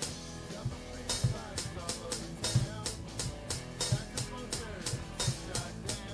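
Boss Dr. Rhythm DR-3 drum machine playing a programmed beat: a kick drum and snare with a steady run of closed and open hi-hats over it. The hi-hats tick about three times a second, with a deeper kick thump roughly every second and a third.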